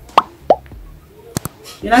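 Two short rising 'bloop' pop sound effects, about a third of a second apart, then a quick double click about a second later, from a like-and-subscribe button animation. Speech begins at the very end.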